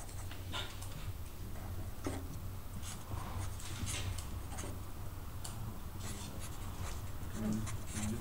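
A black marker writing on paper: a run of short, separate strokes as letters are drawn, over a steady low hum.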